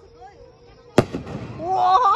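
Aerial firework shell bursting with a single sharp bang about a second in, followed by a brief echo. Near the end, a person's drawn-out exclamation.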